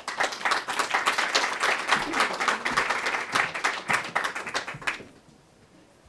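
Audience applauding: dense clapping that goes on for about five seconds, then dies away.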